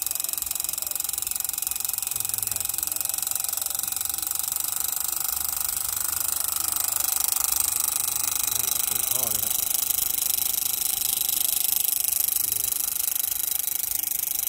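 A model tractor's small motor running steadily with a thin whine as it drives a miniature axial-flow (Phaya Nak) water pump, and a stream of water pouring from the pump outlet and splashing into a shallow pool.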